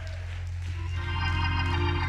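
Church organ holding sustained chords under the sermon, a fuller chord swelling in about a second in over a steady bass note.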